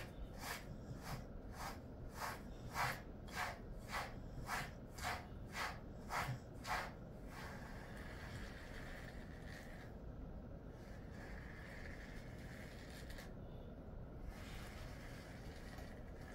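Slicker brush being drawn through a dog's thick coat in quick, even strokes, about two or three a second. The strokes stop about seven seconds in, and only a faint steady hiss is left.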